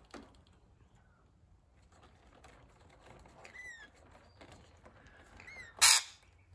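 Rainbow lorikeet giving one short harsh screech near the end, after a few faint chirps. The bird's owner takes it for displeasure at being filmed.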